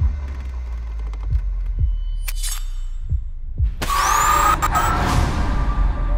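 Horror-trailer sound design: a low steady drone with a few deep thuds, then, about four seconds in, a loud swelling whoosh with a high rising whine that fades away near the end.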